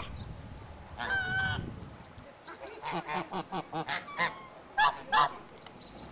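Domestic geese honking: one drawn-out honk about a second in, then a run of short honks, the two loudest near the end.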